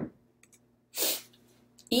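A narrator's short, sharp intake of breath about a second in, just before she speaks again, over a faint steady low hum.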